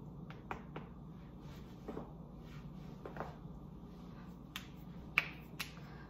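Faint, irregular clicks and taps, about eight scattered over a few seconds, the sharpest near the end, over quiet room tone.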